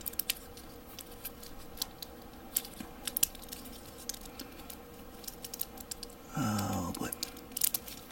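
Small plastic model-kit parts clicking and tapping against each other as they are handled and pressed into place on a Gunpla torso, in scattered light clicks with a cluster near the end.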